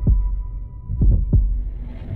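Heartbeat sound effect in a trailer soundtrack: low thumps in lub-dub pairs, one thump at the start and a double thump about a second in, over a faint steady high tone that fades away.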